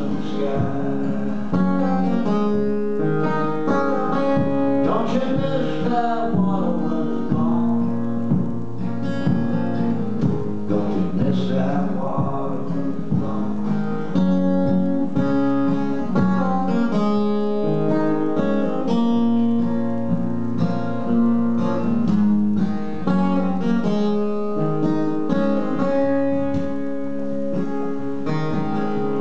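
Flat-top acoustic guitar picked and strummed in a steady rhythm, a country-folk song on solo guitar.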